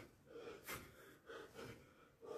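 Open hands slapping a bare chest in repeated strikes, the sharpest about a third of the way in, with the striker's hard breathing between the slaps.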